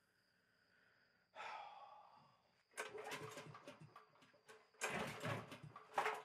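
A short breathy sound about a second in, then two bouts of quiet knocks and rustling as a portable generator is handled.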